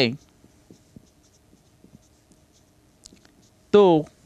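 Marker pen writing on a board: faint short scratches and light taps of the tip as words are written.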